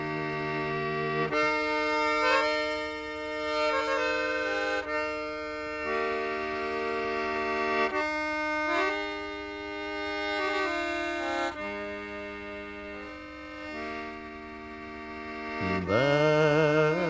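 Instrumental break in a slow English folk ballad: a melody in long held, reedy chords over a steady drone note, moving to a new chord every second or two.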